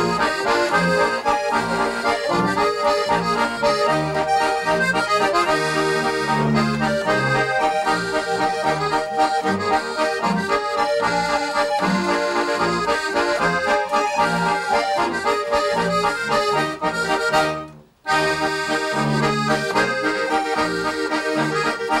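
Two Schwyzerörgeli (Swiss diatonic button accordions) playing a waltz in duet over a double bass line. Near the end, the music breaks off abruptly into a moment of silence, then carries on.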